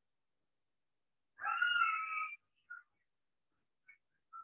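A cat meowing once, a steady call lasting about a second, followed by a few short, faint squeaks, heard over a video call.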